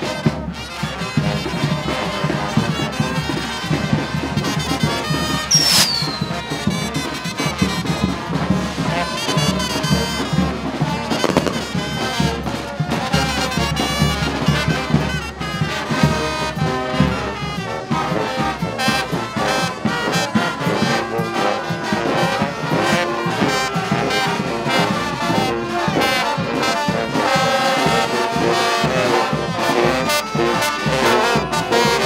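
Mexican village brass band playing as it marches: sousaphones, trombones, trumpets and saxophones over a bass drum. A single sharp bang with a short falling whistle cuts through about five and a half seconds in.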